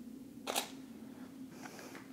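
A DSLR's shutter firing once, a short sharp mirror-and-shutter click about half a second in, taking a manual exposure at 1/50 s.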